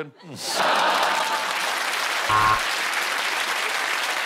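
Studio audience laughing and applauding, swelling up about half a second in and holding steady, with a brief louder pitched sound rising above it about halfway through.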